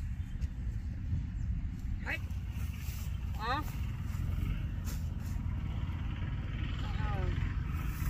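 A steady low rumble, with a person's voice calling out briefly a few times: short rising cries about two seconds in, again at about three and a half seconds, and near the end.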